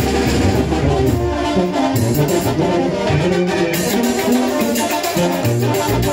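Mexican banda music played loud and continuously, led by brass: trumpets and trombones.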